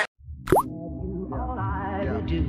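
A short cartoon-style 'plop' sound effect, a quick upward-gliding bloop about half a second in, as background music starts up and carries on.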